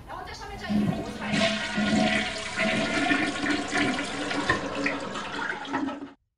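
Toilet flushing: a loud rush of water that starts about a second in and cuts off abruptly at the end.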